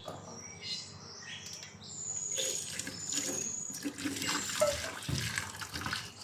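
Freshly boiled water poured from a pot onto greasy baking utensils in a stainless steel bowl, splashing, starting about two seconds in; the hot water is poured to cut the grease on them.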